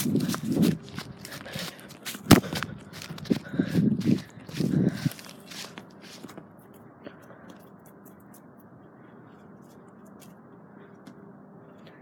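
Footsteps on grass and handling rustle of a handheld phone, with a sharp knock about two seconds in and a few short voice sounds. From about six seconds in only a faint steady outdoor hiss remains.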